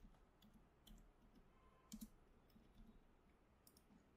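Faint computer keyboard keystrokes and mouse clicks, a handful of short, scattered clicks over near silence.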